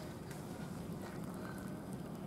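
Steady low outdoor background rumble with a few faint clicks, and a brief faint high tone about one and a half seconds in.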